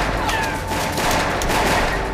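Heavy gunfire: a fusillade of many rapid, overlapping shots.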